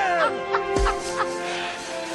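Cartoon characters making squawky, squeaky vocal calls in short rising and falling glides, over steady background music. One long falling glide ends in a low thud a little under a second in.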